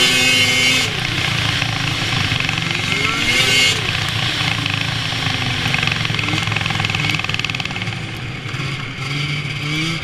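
A 2003 Arctic Cat F7 snowmobile's two-stroke twin engine running under way. Its pitch climbs in surges of acceleration near the start and again about three seconds in, then settles lower and steadier before rising again near the end. A loud hiss of track and snow runs over the engine, strongest in the first few seconds.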